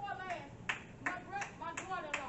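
Hand claps in a steady beat, about three a second, starting roughly two-thirds of a second in.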